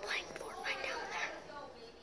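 A boy whispering.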